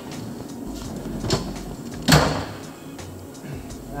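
Metal tool drawer in a fire engine compartment sliding shut, with a light knock and then a sharp bang as it closes about two seconds in.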